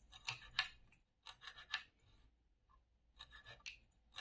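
A knife chopping fresh green herbs on a wooden cutting board: three short runs of quick, crisp cuts, a few strokes each, with brief pauses between.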